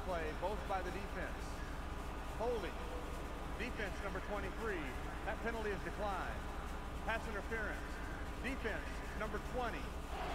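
Faint speech from the football broadcast playing in the background, over a low steady hum.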